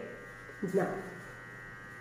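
A steady electrical buzz made of several thin, constant tones, a fairly high whine that does not change.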